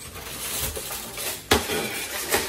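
Shrink-wrapped case of plastic water bottles being picked up and handled, with rustling and a sharp knock about one and a half seconds in.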